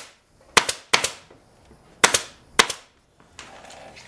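Pneumatic upholstery staple gun firing four times, in two pairs about a second apart, driving 3/8-inch staples through webbing into a wooden chair frame.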